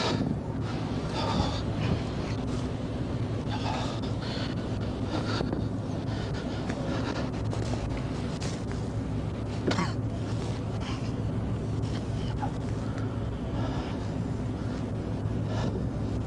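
Steady low hum of an idling vehicle engine, with a few faint scattered noises in the first few seconds and a single sharp knock about ten seconds in.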